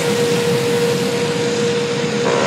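Steady room noise: an even hiss with a steady hum under it, and no speech.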